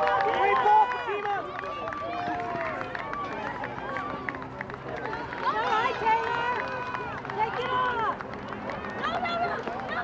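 Several voices of spectators and players calling out and talking over one another across an open field, with no one speaker clear. They are loudest in the first second.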